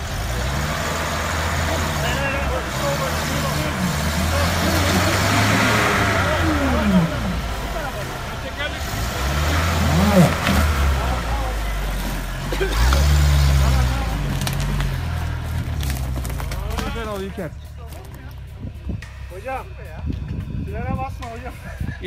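Land Rover Defender 110 engine revving up and down in repeated bursts of throttle as it works through a steep, rutted dirt gully. The engine eases off a few seconds before the end.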